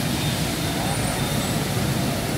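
Steady hiss of traffic on a rain-wet city street.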